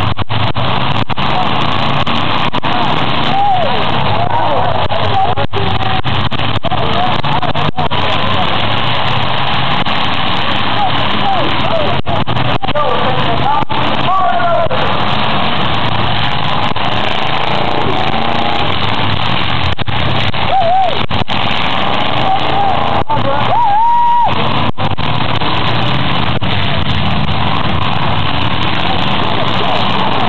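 Demolition derby cars running and revving in a mud arena, with occasional sharp knocks, under loud, steady spectator voices.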